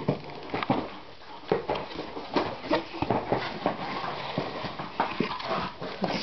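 A Bengal cat making short mews from inside a cardboard box, among knocks and rustles of the box being handled.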